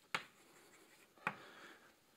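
Chalk writing on a blackboard: two sharp taps of the chalk against the board, about a second apart, with faint scratching between them.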